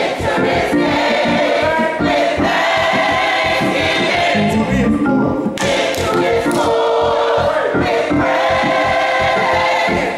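Choir singing together in full voice, loud and sustained, with a brief break between phrases about halfway through.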